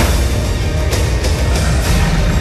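Loud film-trailer music with a heavy bass, running continuously.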